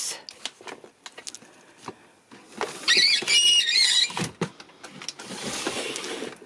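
Plastic storage drawers being shut and pulled open: light clicks and knocks, then a loud high-pitched plastic-on-plastic squeak lasting about a second and a half from about two and a half seconds in, followed by a softer sliding rustle.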